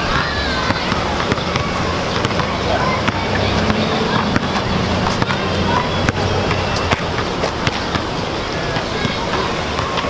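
A basketball bouncing on an outdoor asphalt court during play, irregular sharp knocks over steady outdoor city noise, with voices in the background.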